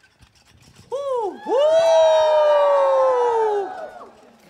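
Several women's voices cheering together: a short whoop about a second in, then one long shared 'woo' that slowly falls in pitch and fades just before the end.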